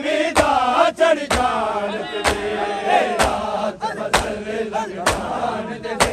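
A crowd of men chanting a noha while beating their chests in unison (matam), a sharp collective slap landing about once a second over the voices.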